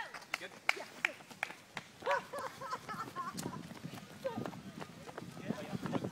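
Running footsteps on a park footpath from people racing with teammates carried piggyback, about three sharp steps a second at first. From about two seconds in, voices call out over the footsteps.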